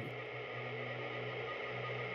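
Background music: a quiet, steady, sustained low drone with no beat.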